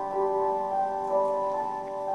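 Solo grand piano playing a slow passage of single notes that ring on, a new note struck about every half second.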